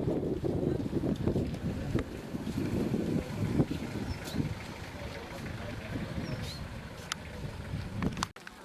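Wind buffeting the microphone, an irregular low rumble, over the indistinct voices of a gathered crowd.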